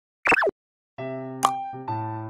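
A short cartoon sound effect that drops quickly in pitch, then bright children's-style intro music starting about a second in, with a sharp tap partway through.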